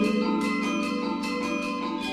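Gamelan ensemble playing: bronze metallophones and kettle gongs struck in a quick, even pulse, their tones ringing on over a low held note.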